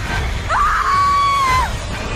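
A girl's high-pitched scream, sliding up at the start, held for about a second and then falling off, over a low, droning horror-trailer score.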